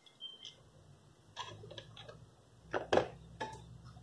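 Scattered light clicks and knocks from handling equipment on a workbench as a multimeter and its probes are put down and the TV is moved, the loudest knock about three seconds in, over a faint steady low hum.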